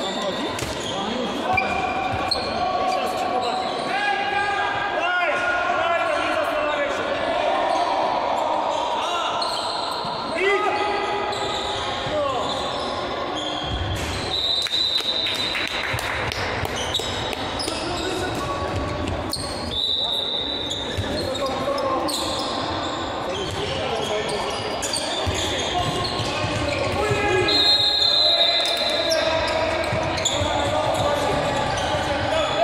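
Handball game in a large, echoing sports hall: players' shouts and calls, the ball bouncing on the court, and three short, high referee's whistle blasts.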